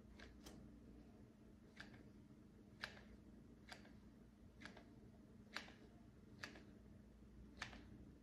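Faint clicks of a hot glue gun's trigger, irregular and about once a second, as glue is fed out. A low steady hum of room tone lies underneath.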